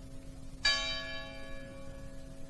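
Church bell of the Anime Sante church tolling a single stroke about two-thirds of a second in, ringing on and fading, with the hum of the previous stroke still sounding beneath. It is one of a slow memorial toll of 309 strokes, one for each earthquake victim.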